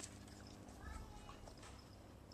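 Near silence: faint outdoor background with a faint low hum and one faint short sound about a second in.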